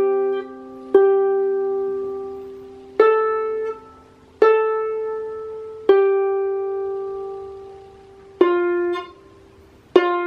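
Lever harp played by a beginner: about six single notes plucked one at a time in a slow, simple tune, each ringing and fading before the next.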